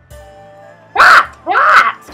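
A child's voice giving two loud, short yells about a second in, over faint background music.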